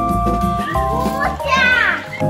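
Background music with steady held notes, and over it a child's high-pitched voice in the second half, ending in a loud call that falls in pitch.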